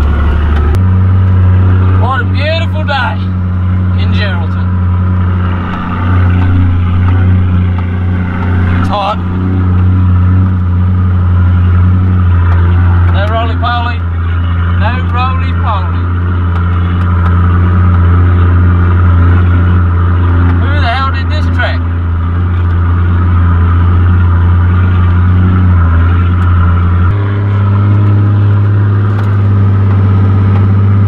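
4WD engine running steadily under load while driving on soft sand, heard from inside the cabin as a loud, constant drone. Its pitch steps up shortly after the start and again near the end.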